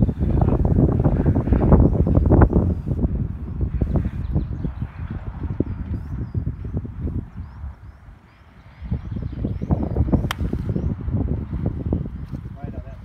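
Wind buffeting the microphone, then a single sharp click of a golf club striking the ball about ten seconds in.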